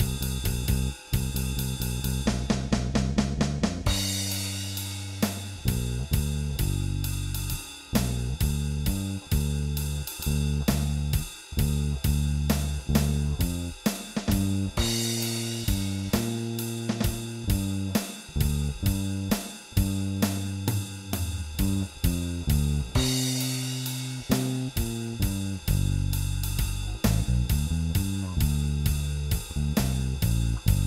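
Electric bass guitar through a TV Jones 4K neck pickup with a mid-scoop tone circuit, playing a walking blues bass line over a drum kit keeping time on hi-hat and snare. Cymbal crashes open up about four, fifteen and twenty-three seconds in.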